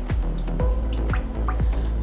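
Cooking oil poured in a thin stream into a nonstick pan, splashing with a few short falling plops, over steady background music.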